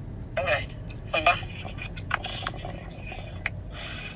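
Short snatches of sound from a mobile phone's small speaker and a few light clicks, over the steady low hum of a car cabin.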